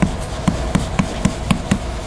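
Chalk tapping and scraping on a blackboard as letters are written: a quick run of sharp taps, about four a second.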